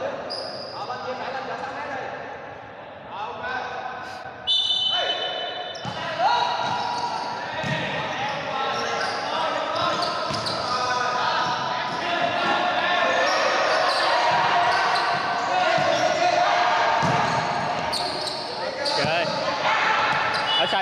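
Futsal ball being kicked and bouncing on a wooden indoor court again and again, the hits echoing in a large hall, with players' voices in the background.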